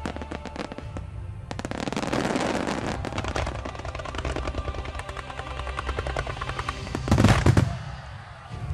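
Fireworks display: a rapid barrage of sharp bangs and crackles that grows thicker about two seconds in, with the loudest burst of heavy bangs about seven seconds in, heard over background music.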